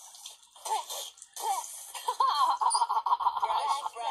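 Cartoon children's voices laughing through a TV speaker: a few short vocal outbursts, then a quick run of giggling in the second half.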